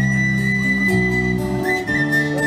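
Live Celtic folk band playing an instrumental passage: a tin whistle carries a high, held melody over strummed guitars and bass.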